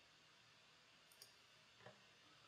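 Near silence, with two faint computer-mouse clicks, the first about a second in and the second near the end.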